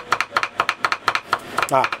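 Two Chinese cleavers, a bone cleaver and a vegetable cleaver, chopping garlic on a cutting board in quick, even strokes, about six or seven a second, mincing it fine. A man's brief "ah" comes near the end.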